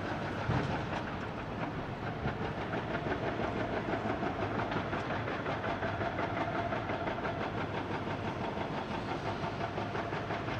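Heavy excavators' diesel engines running together with the fast, steady rattling blows of a hydraulic rock breaker hammering rock.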